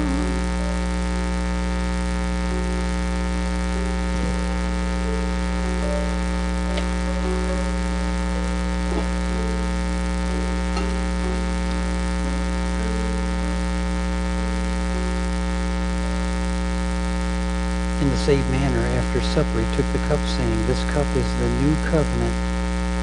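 Loud, steady electrical mains hum through the sound system, with faint soft notes shifting underneath. A low voice comes in near the end.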